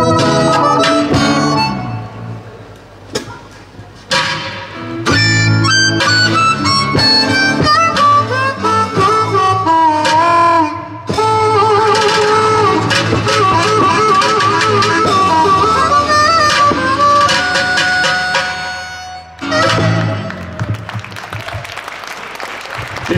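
Live blues band playing, a bending harmonica lead over acoustic guitar, bass guitar and keyboard. The tune ends about 19 seconds in and applause follows.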